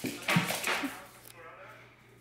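A woman's brief breathy vocal sound in the first second, then a much quieter stretch.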